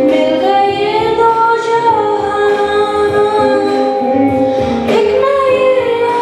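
A boy singing a Telugu Christian song into a microphone, with a melody that glides between notes over steady keyboard chords.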